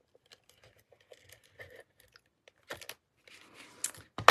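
Faint rustling and light taps of paper and cardstock being handled on a craft table, a little louder in the last second or so.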